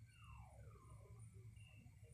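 Near silence: a steady low hum with faint distant animal calls, one sliding down in pitch during the first second.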